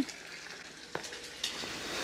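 Quiet, even background hiss with two light taps about half a second apart, near the middle.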